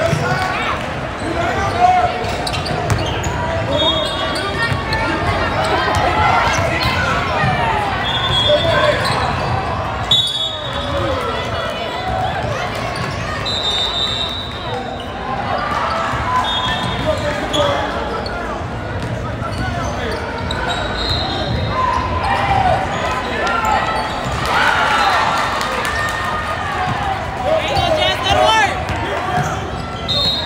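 Youth basketball game sounds in a large gym: a ball being dribbled on the hardwood floor and short, high sneaker squeaks, under continuous talking and shouting from spectators and players.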